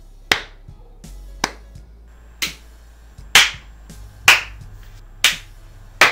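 Slow hand clapping: six sharp claps about a second apart, the middle ones loudest, over faint background music.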